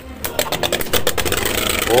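Two Beyblade Burst tops spinning in a plastic stadium: a steady whirr broken by rapid clicks as they scrape and clash against each other.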